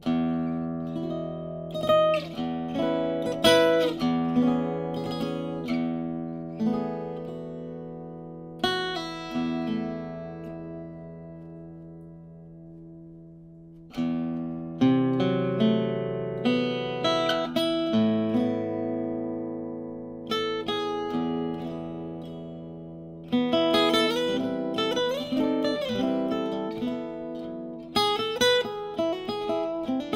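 Koentopp Chicagoan archtop acoustic guitar played solo and unamplified: chords struck and left to ring out. One chord fades away for several seconds before a fresh chord comes in about halfway through, and near the end the playing turns to quicker runs of notes.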